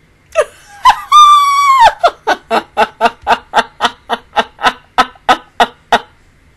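A woman bursting out laughing: a short falling squeal, then a high squeal held for nearly a second, then a steady run of laughs at about four a second.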